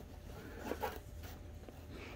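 Faint rustling of a soft blanket being unfolded and spread out by hand.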